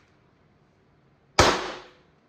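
A single handgun shot about one and a half seconds in, loud and sharp, with a short ring of reverberation from the indoor range.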